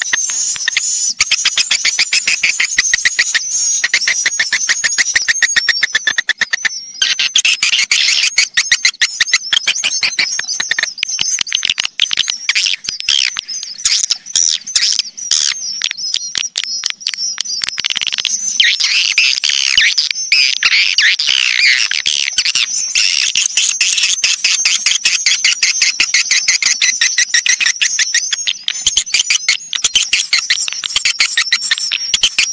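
Recorded swiftlet calls used as a swiftlet-house lure. Edible-nest swiftlets keep up a dense, continuous chatter of rapid high chirps and clicking twitters, with a brief break about seven seconds in.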